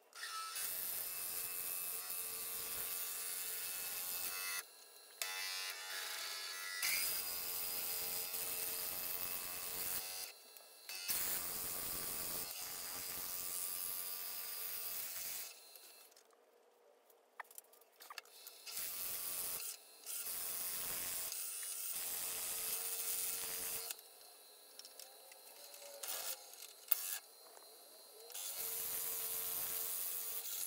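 A Forstner bit in a wood lathe's tailstock drill chuck boring into a spinning wooden napkin-ring blank at about 700 RPM: a steady cutting noise over a steady motor tone. The cutting stops several times, with a few seconds of near quiet a little past halfway.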